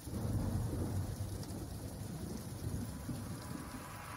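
Rain-and-thunder sound effect opening a song: a quiet, steady low rumble with a thin hiss over it.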